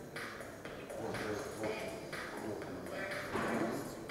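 Faint voices talking in a room, quieter than the main conversation, with no other distinct sound standing out.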